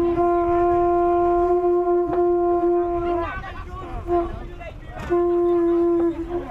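Conch shells blown as horns: one steady low note with overtones, held for about three seconds, then breaking off. A short blast follows about four seconds in, and the note is taken up again about a second before the end.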